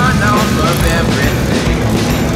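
A stunt motorcycle's engine revs as the bike is held up on one wheel, mixed with rock music playing over loudspeakers.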